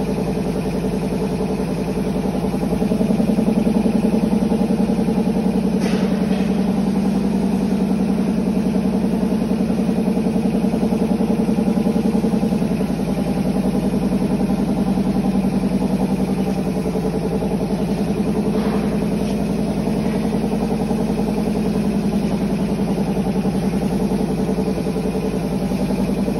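Garlic peeling machine running empty: its electric motor spins the abrasive-lined stainless-steel drum with a steady hum. The hum swells slightly about three seconds in and settles back again about halfway through.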